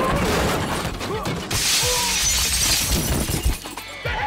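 Glass shattering and breaking apart, a long spray of breaking glass starting about a second and a half in and lasting about two seconds, amid low thuds of a fight.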